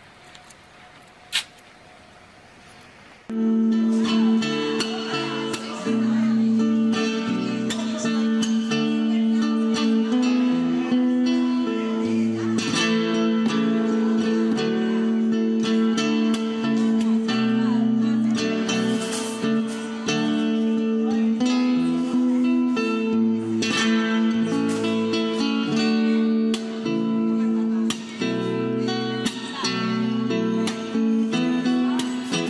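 Faint background with one sharp click, then about three seconds in guitar music cuts in suddenly and plays on loudly, plucked notes over sustained low notes.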